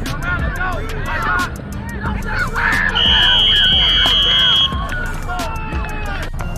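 A whistle blown once in one long, steady, high blast lasting under two seconds, about three seconds in, as the play is stopped. Shouting voices are heard throughout.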